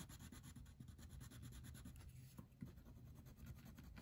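Faint scratching of a blue wax crayon colouring on paper, in quick repeated strokes.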